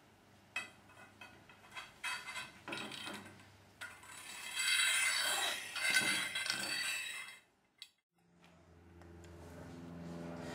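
Small steel bolts clicking against an aluminium rail, then a bolt head scraping for about three seconds as it slides along the rail's slot. The sound cuts off suddenly near the end and a low hum comes up.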